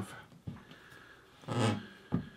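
A man's short voiced exhale about a second and a half in, with faint handling noise from a laptop lid being opened.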